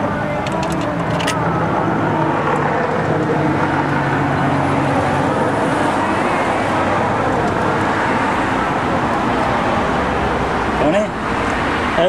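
Steady roadside traffic noise from passing cars.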